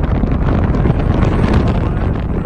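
Strong wind buffeting the microphone: a loud, rough rumble with crackle, in a sustained wind of about 20 knots gusting to 30.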